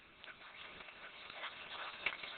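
A Doberman running across grass close by: faint rustling and scuffing from its feet that grows louder toward the end.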